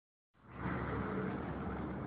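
Vehicles driving past on the street: a steady traffic rumble with a faint engine hum, starting about half a second in.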